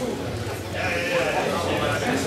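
Audience voices in a large hall: overlapping chatter and a drawn-out vocal call, strongest around the middle, over a steady low electrical hum.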